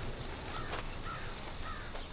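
Crows cawing faintly over outdoor background hiss, a run of short repeated calls about two a second.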